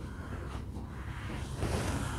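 Soft, even rustling of hands pressing and sliding over a horse's coat, with a faint low hum underneath.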